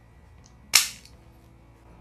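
Floral scissors snipping once through a jasmine stem: a single sharp, crisp cut about three-quarters of a second in.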